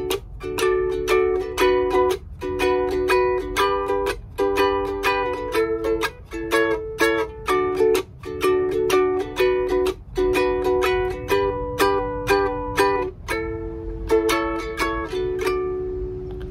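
Sopranissimo kit ukulele strummed in a steady rhythm, chord after chord in short phrases, the last chord left ringing near the end. The chords sound much better in tune now that a homemade compensated Corian saddle moves the strings' contact point back to suit the neck's longer-than-intended scale.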